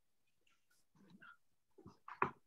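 Near silence: quiet room tone with a few faint, brief sounds about a second in and again near the end.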